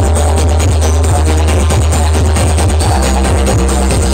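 Loud electronic dance music played through a large stack of loudspeaker cabinets, with a heavy, sustained deep bass.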